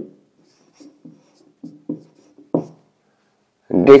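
Marker pen writing on a whiteboard: a run of short, faint strokes, the one about two and a half seconds in the loudest.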